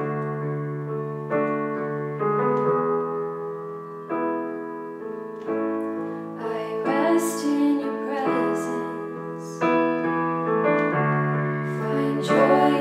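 Yamaha digital piano playing slow sustained chords, a new chord struck about every second and a half. A woman's voice comes in singing about halfway through.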